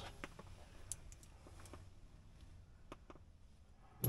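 Near silence with a handful of faint, scattered clicks from small hardware, a screw, being handled in the fingers.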